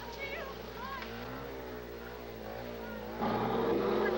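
Motor scooter and bus engines running as they drive toward the listener, the pitch wavering. The sound gets suddenly louder a little after three seconds in as music comes in.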